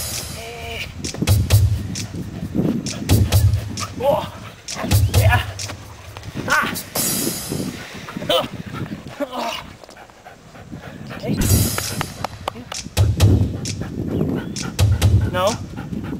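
A Belgian Malinois tugging on a leather tug and giving short, high whines, over many small clicks and dull low thumps every second or two.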